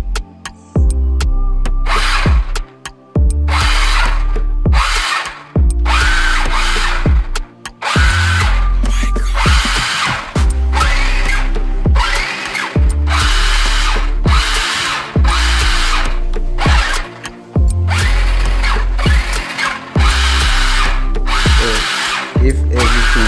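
Small electric gear motors of a toy RC stunt car whirring in repeated bursts of about a second each as the wheels spin up and stop, over background music with a steady bass beat.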